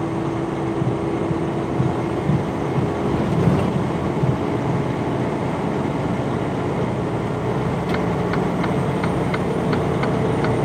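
Big-rig engine and road noise heard inside the truck's cab while cruising on the highway, a steady drone. Near the end a regular ticking starts, about three ticks a second, as from the turn signal.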